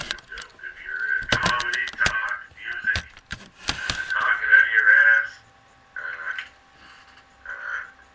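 Talking that cannot be made out, broken by several sharp clicks between about one and four seconds in, with a faint steady hum underneath; it quiets after about five seconds.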